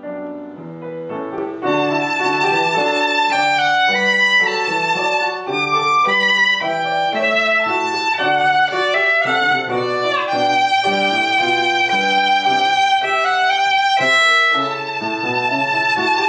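Violin and upright piano playing a duet. The piano is heard alone and softly at first; the violin comes in about two seconds in and carries the melody with vibrato over the piano.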